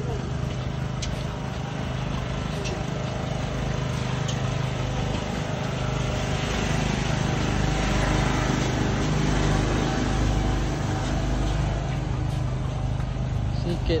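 Steady motor hum of an inflatable arch's blower fan, swelling about halfway through as the runner passes through the inflatable tunnel, over wind and movement noise from jogging with the phone.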